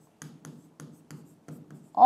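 Handwriting on a blackboard: a quick series of short scratches and taps as letters are written.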